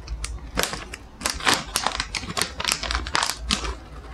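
A plastic dog-treat packet being torn open and rummaged in by hand: close, sharp crinkling and crackling in quick, irregular runs, with soft handling thumps underneath.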